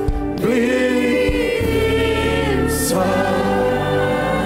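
Many voices singing a slow gospel worship song together, with held notes over a sustained instrumental backing.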